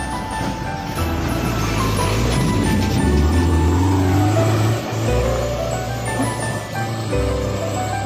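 Background music over a loaded dump truck's diesel engine and rattling body passing close by on a rough dirt road. The truck's rumble builds and is loudest about three to five seconds in, then fades as it moves away.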